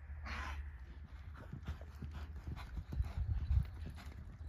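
Hoofbeats of a quarter horse mare on soft arena sand as she steps and shifts while working a steer: a run of dull thuds, loudest near the end, over a steady low rumble. A short hiss comes about half a second in.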